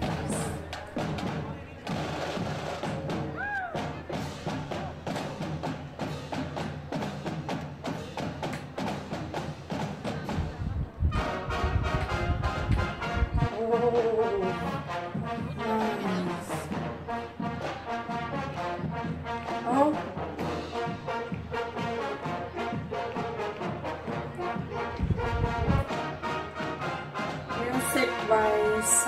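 High school brass marching band playing a march: brass over steady drumbeats, with a new passage starting about eleven seconds in.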